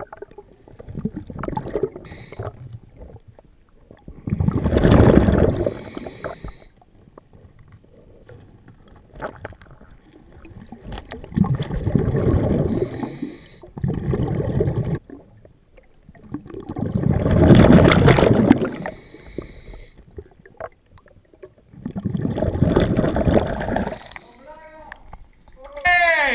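Scuba diver breathing through a regulator underwater: exhaled bubbles rumble out in four bursts, about one every six seconds, with short high hisses in between.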